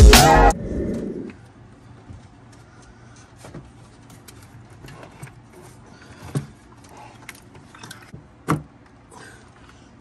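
Intro music cuts out about half a second in, followed by scattered light clicks and knocks of plastic and metal as a Ram 5.7 Hemi's intake manifold is worked loose and lifted off the engine. The sharpest knocks come about six and eight and a half seconds in.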